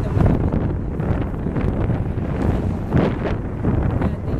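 Wind buffeting the microphone outdoors: a loud, gusty low rumble.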